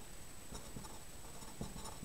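Felt-tip marker writing on paper: faint scratching strokes as an arrow and a word are written.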